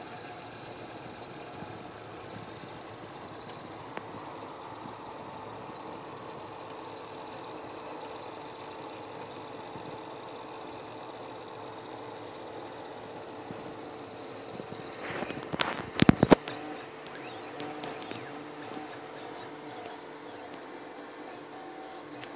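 Mendel Max 2.0 3D printer running: a steady high whine and a lower hum from its stepper motors and fans. About two-thirds of the way in comes a quick cluster of sharp knocks, and then the motor tones glide up and down as the axes move.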